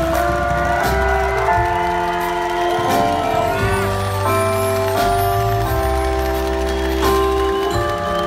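Slow waltz music from a live band: long held melody notes over a steady bass line.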